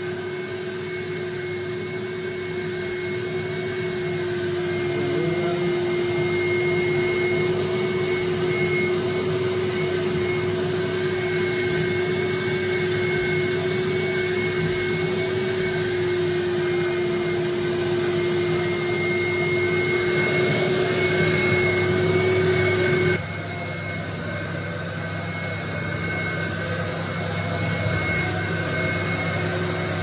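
Vacuum motor of a portable hot-water carpet extraction machine running steadily with a constant whine. About 23 seconds in, the steady tone cuts off and the sound drops suddenly in level.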